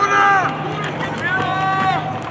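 Voices shouting across the field over general crowd noise, with a long drawn-out call near the start and another in the second half.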